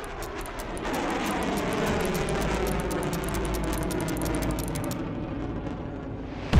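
Steady drone of a WWII bomber's piston engines, a low rumble that swells about a second in, with a fast even ticking over it that stops about a second before the end.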